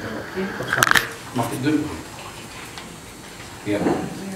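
Quiet, intermittent speech in a small room, with one brief sharp click about a second in.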